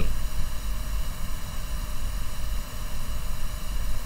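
Steady low rumble with an even faint hiss: the background noise of the recording between spoken sentences.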